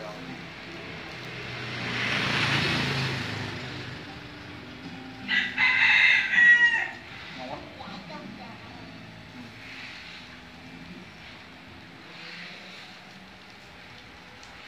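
Rooster crowing once, about five seconds in, the loudest sound here, lasting about a second and a half. Shortly before it, a broad rushing sound swells and fades.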